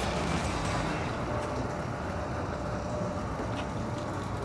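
Steady low rumble with a light hiss of outdoor background noise, with no distinct events.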